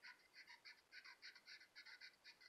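Faint squeaking of a felt-tip marker on sketchbook paper, in quick back-and-forth strokes of about six a second, as an oval eye is filled in solid black.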